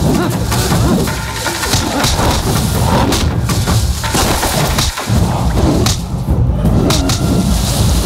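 Loud action-movie fight soundtrack: a dense, rumbling music score laid over a string of sharp hits and thuds.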